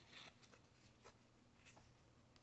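Near silence with a few faint, brief rustles of glossy Fleer Ultra hockey trading cards being handled and fanned in the hands, the clearest just after the start.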